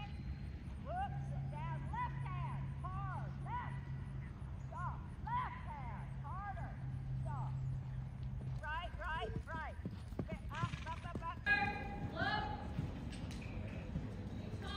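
Hoofbeats of horses cantering over sand arena footing, with voices in the background.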